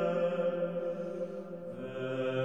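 Liturgical chanting at an Orthodox church service: long sustained sung notes, with a dip in level and a change to a new note near the end.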